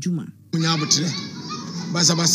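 A man speaking, a brief pause after a fraction of a second, then from about half a second in a voice again over a noisy background.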